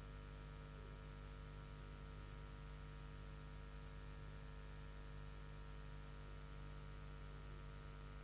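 Faint, steady electrical mains hum with a thin hiss, unchanging throughout.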